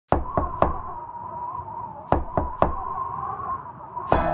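Two groups of three quick knocks, as on a door, about two seconds apart, over a wavering high held tone: the eerie intro of a song.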